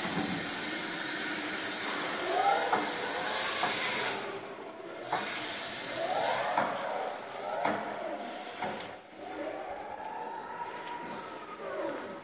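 Jungheinrich EKS 110 electric order picker on the move, its drive motor whining up and down in pitch several times as it speeds up and slows. A steady high hiss runs over the first four seconds and again for a couple of seconds after a short break.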